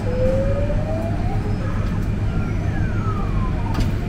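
Claw machine's electronic sound effect while the claw is played: a slow rising tone, then a gliding falling tone, over a steady low hum.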